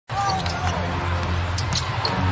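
Live basketball game audio: a ball being dribbled on the hardwood court, with short sharp strikes over a steady low arena hum.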